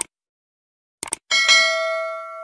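Subscribe-button animation sound effect: a mouse click, then a quick double click about a second later, followed at once by a bright bell ding that rings on and slowly fades.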